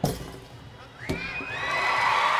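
A thump as the gymnast springs off the balance beam. About a second later comes the sharp thud of her landing on the mat from a double front dismount. Right after it an arena crowd breaks into cheering and shrill shrieks that grow louder.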